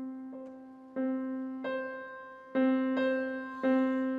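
Solo piano playing a slow accompaniment: chords struck about once a second, each left to ring and die away over a sustained low note.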